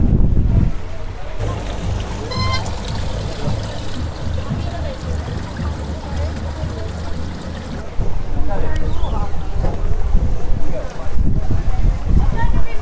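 Spring water pouring from a stone spout into a plastic water bottle, a steady rushing splash. Near the end it gives way to wind on the microphone and people's voices.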